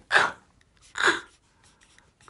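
A woman's voice twice producing a sharp, breathy 'khh', the Nakoda glottalized k' stop consonant, which has no English equivalent.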